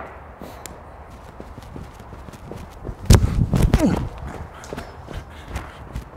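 A cricket fast bowler's run-up footsteps on artificial turf, a soft quickening patter, ending about three seconds in with a loud thud of the delivery stride and a short effortful grunt as the ball is bowled.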